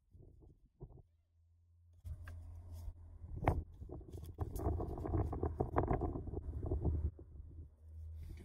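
Wind rumbling on the microphone, with the rustle and a few short clicks of playing cards being spread into a fan. The first couple of seconds are nearly silent.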